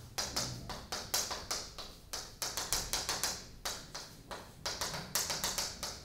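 Chalk writing on a chalkboard: a rapid, uneven run of sharp taps and short scratches as words are written.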